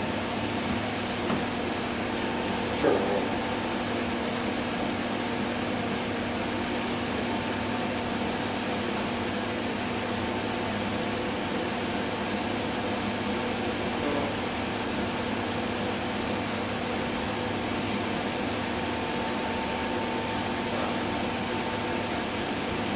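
Blower door fan running steadily as a hum with a few held tones, keeping the house depressurized at about 15 pascals for a leak check.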